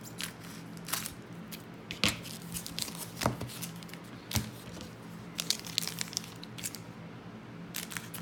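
Scissors snipping through the wrappers of trading-card packs, with the wrappers crinkling as the packs are handled: a scatter of sharp, irregular snips and rustles.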